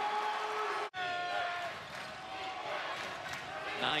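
Basketball game sound in a college arena: crowd noise and voices with a basketball being dribbled on the hardwood court. The sound drops out sharply for an instant about a second in.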